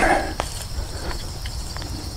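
A hand garden tool scratching and digging through soft soil and wood-chip mulch, with a few light clicks, over steady cricket chirping.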